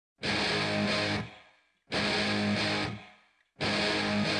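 Intro music: a distorted electric guitar plays three short bursts, each about a second long, with brief silences between them.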